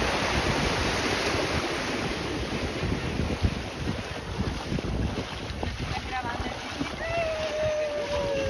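Small sea waves washing and breaking in shallow water, with wind on the microphone; the wash is heaviest at first and thins out. Near the end a short held voice sound, slightly falling in pitch, rises above it.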